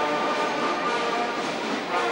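Combined brass and reed band playing a polka, the brass holding chords of several notes at once.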